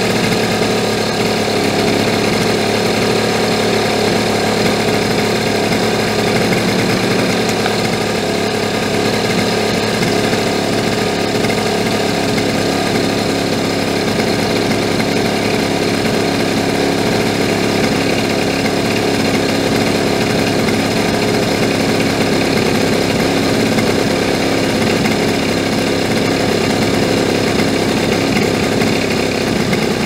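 50cc two-stroke scooter engine running at a steady raised idle while its carburettor's mixture screw is backed out a quarter turn at a time. The mixture is being leaned from rich, with the engine speed held steady, to find the point where the revs drop from too much air.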